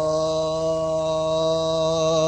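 One long held musical note, a chord of several steady pitches sustained without change, closing the naat.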